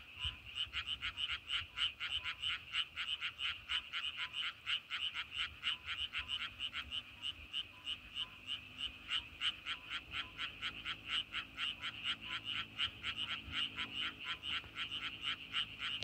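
A chorus of frogs calling at a pond: a dense, unbroken run of short, rapid calls, about five a second, overlapping from many frogs.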